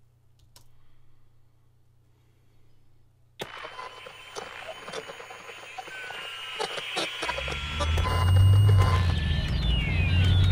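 Near-quiet room tone, then about three and a half seconds in a film trailer's soundtrack starts suddenly: a hazy ambience with clicks and a few high gliding tones, growing louder, joined by a deep low rumble about seven seconds in.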